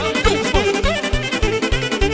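Lively Romanian folk dance music played by a wedding band, without singing: a fast, steady bass beat under an ornamented lead melody that slides up and down.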